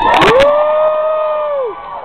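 One person's loud drawn-out whooping cry: it swoops up, holds one high note for over a second, then drops off. A few sharp clicks sound as it begins.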